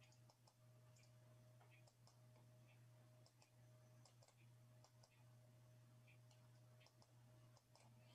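Near silence, with faint, irregular computer mouse clicks as checkboxes are ticked, over a low steady hum.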